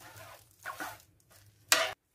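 Knife cutting raw chicken breast into cubes on a cutting board: a few short scraping strokes, then a brief, louder clack near the end.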